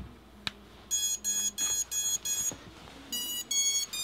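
Brushless motors of a miniquad beeping through their BLHeli_S ESCs as they power up on a freshly connected battery: a quick run of short electronic beeps about a second in, then another run near the end. A click comes right at the start.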